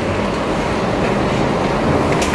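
Steady rumbling background noise with hiss and low hum, fairly even in level, and no speech.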